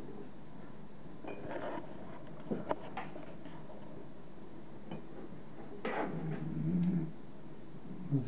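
Syringe drawing lavender oil up through a thin tube from the neck of a glass bottle: a few small clicks, then a louder rough gurgling suck near the end as liquid and air are pulled into the syringe.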